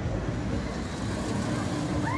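Giant pendulum ride running as its gondola swings down from the top of its arc: a steady low mechanical rumble, with a rushing whoosh that swells about halfway through.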